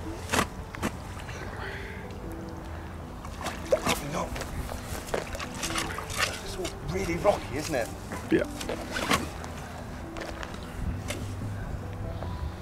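Water sloshing and splashing around a landing net holding a carp in the shallow margin, with scattered knocks and clicks as the net and bank stick are handled. A quiet melody plays underneath.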